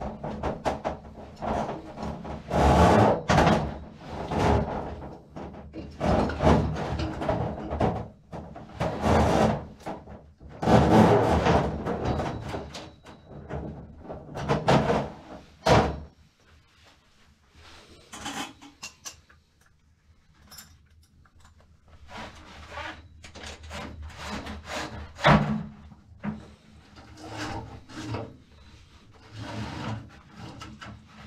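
Steel drain-snake cable running down an open toilet flange, rubbing, scraping and knocking inside the drain pipe in loud, irregular bursts. About halfway through it drops to a quieter stretch with scattered knocks.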